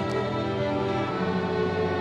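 Student string orchestra playing: violins over a held low string note that grows stronger about a second in.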